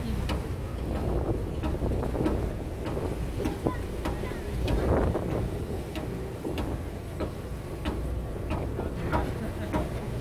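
Wind buffeting the microphone on a boat at sea, over a steady low rumble from the boat, with scattered sharp knocks throughout.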